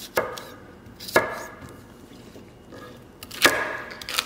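Chef's knife chopping cucumber and celery on a wooden cutting board: sharp knocks of the blade on the board just after the start, about a second in, and near the end, with a few fainter cuts just before the last.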